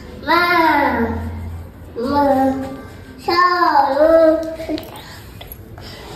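A young girl singing three short, drawn-out phrases in a high voice, the pitch sliding up and down on each.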